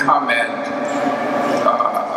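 A man speaking into a podium microphone.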